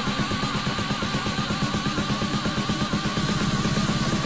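Electronic dance music played from a DJ mix, with a rapid, driving beat and a wavering high synth tone above it.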